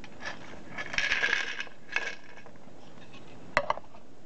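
Small metal and plastic circuit-breaker parts rattling and clinking in a clear plastic bowl, with a few sharp clicks later as the bowl is handled and set down on a kitchen scale.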